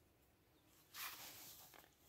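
Near silence, broken about a second in by a brief rustle of a person moving, lasting under a second.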